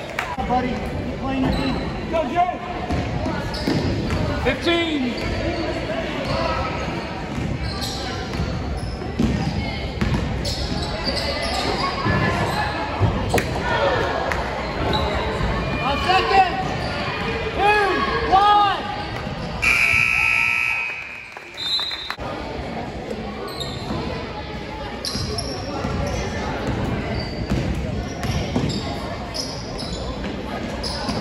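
Basketball game in a gym: a ball bouncing on the court among the voices of players and spectators, with a short, steady high tone about twenty seconds in.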